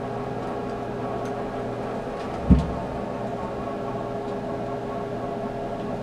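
Steady mechanical hum with a hiss underneath, and a single low thump about two and a half seconds in.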